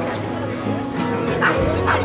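A dog barking twice, two short barks about half a second apart in the second half, over background music.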